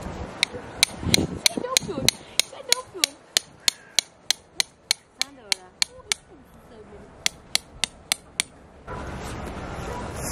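A hammer driving a tent stake into the ground: a steady run of sharp strikes, about three a second, that stops about eight and a half seconds in.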